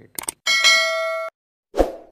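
Sound effects for a subscribe-button animation: two quick clicks, then a bell-like ding held for under a second that cuts off abruptly, then a short dull thump near the end.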